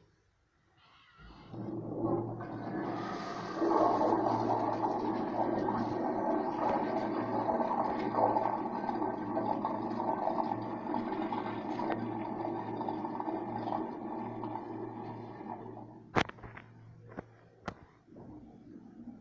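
Flushometer valve on a vintage "Standard" Expello urinal flushing. Water starts rushing about a second in, runs strong for about twelve seconds, then tapers off. A few sharp clicks follow near the end.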